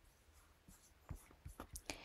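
Near silence: room tone, with a few faint taps in the second half.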